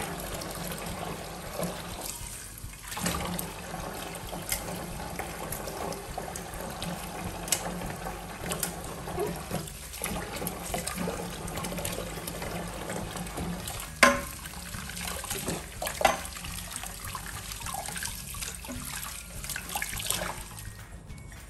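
Kitchen tap running into a stainless steel sink as dishes are washed by hand, with scattered clinks and knocks of metal pans. Two sharp knocks about two-thirds of the way through are the loudest sounds.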